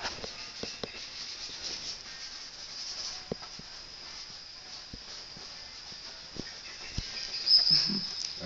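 Chalk rubbing over a paper drawing pad, with scattered light taps as the chalk strikes the paper, over a steady hiss.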